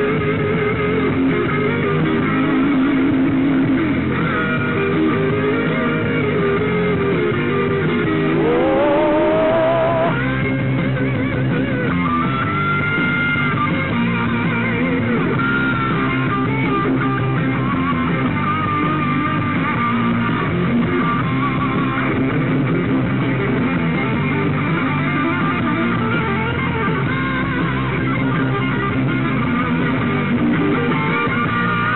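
Live rock band playing an instrumental passage led by guitar, with wavering, bent notes and one long note bending upward about eight seconds in.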